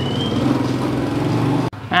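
Motorbike engine idling steadily, cutting off suddenly about a second and a half in.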